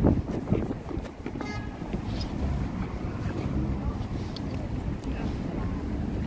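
City street traffic as a steady low rumble, with wind on the microphone.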